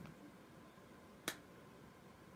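Near silence: room tone, broken by one short, sharp click a little past the middle.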